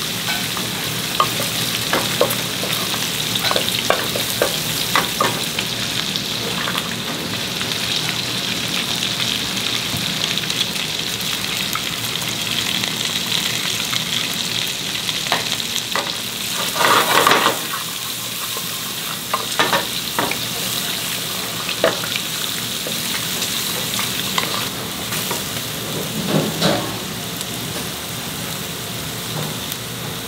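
Vegetables sizzling in oil in an aluminium pot, stirred with a wooden spatula that knocks and scrapes against the metal now and then, with a louder burst of sizzling about halfway through as fresh vegetables are worked in.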